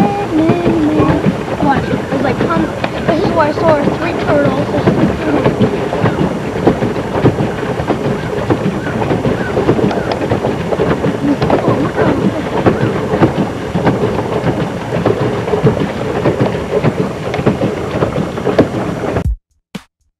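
Pedal boat's paddle wheel churning and splashing the pond water in a dense, continuous rush of noise, with faint voices in the first few seconds. It cuts off abruptly just before the end.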